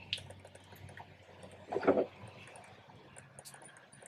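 Faint hand-handling sounds of stainless steel ice cream machine parts being greased with food-grade lubricant: light ticks and rubbing, with one short louder sound about two seconds in.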